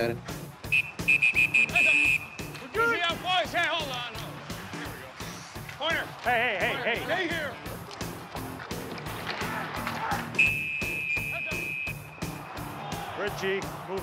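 Background music with a steady beat over on-ice game sound: a referee's whistle blows two long blasts, about a second in and again about ten seconds in, and players shout in between.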